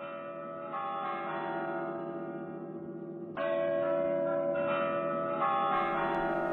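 Bell-like chimes ringing in sustained chords, struck afresh about a second in and again just past the middle. The sound is dull and narrow, like an old film soundtrack.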